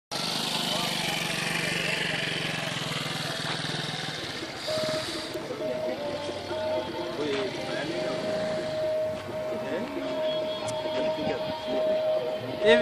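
People's voices over a low, steady engine-like hum that drops away after about four seconds; after that, a steady held tone keeps cutting out and coming back beneath the voices.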